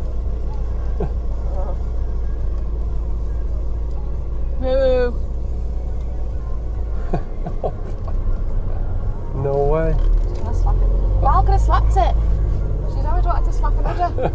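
Steady low engine and road rumble inside the cabin of a Volkswagen Caddy camper van driving slowly along a narrow lane. The rumble dips about seven seconds in and grows louder again from about nine and a half seconds, with brief voices over it, including one short wavering call near five seconds.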